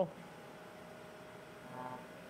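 Quiet background hiss with a faint steady hum, and a brief faint voiced sound near the end.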